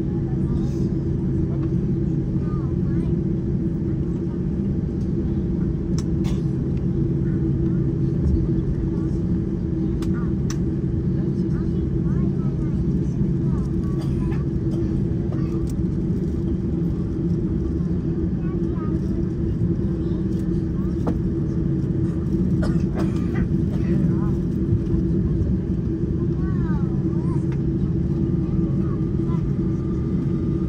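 Cabin noise of a Boeing 747-8 taxiing on the ground, its GE GEnx engines at low thrust giving a steady low drone with a hum in it, heard from inside the cabin over the wing. A few faint clicks sound through it.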